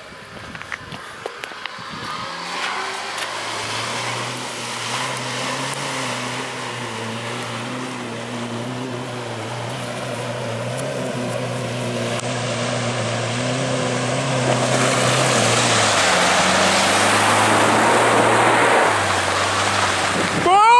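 A car wading through a deep flooded ford toward the microphone: its engine held at steady low revs, with a slight drop near the end, growing louder as it comes. Water rushing and splashing off its bow wave swells into the loudest part in the last few seconds.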